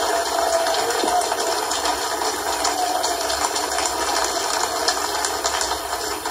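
Audience applauding steadily, a dense patter of many hands.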